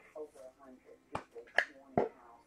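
Faint, low voice talking indistinctly, with three sharp clicks or taps about one, one and a half and two seconds in. The middle click is the loudest.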